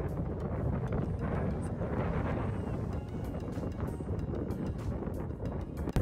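Wind blowing across the microphone, a steady low rumble with no clear tones.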